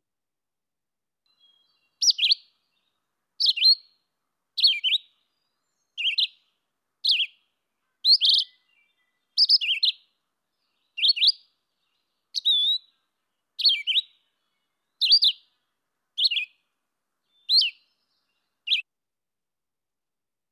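Red-eyed vireo singing: a steady run of about fifteen short high phrases, each separated by a brief pause, starting about two seconds in.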